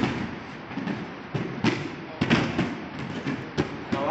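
Hands, feet and bodies of several people landing on judo tatami mats during flips and rolls: about ten sharp, irregular thuds and slaps that echo in a large hall.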